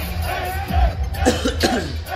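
A man coughing over music with a heavy bass beat, the cough coming past the middle; a voice is also heard over the beat.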